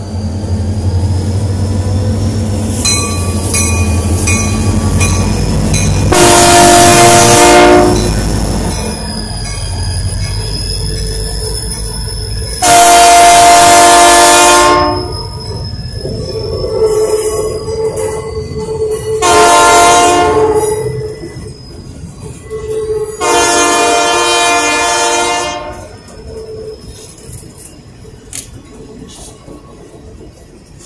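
Diesel freight locomotives passing at close range, running with a low engine rumble, the lead unit sounding its multi-chime horn in four blasts, long, long, short, long: the grade-crossing signal. A thin high wavering squeal from the wheels runs under the horn, and the sound drops to the rolling of freight cars near the end.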